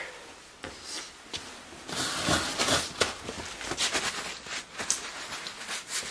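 Handling noise: irregular rustling and light clicks and knocks as the camera is picked up and moved, with a few footsteps.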